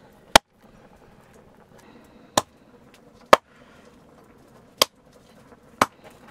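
A heavy knife chopping through roasted pork and bone: five sharp, separate strikes spaced about one to one and a half seconds apart.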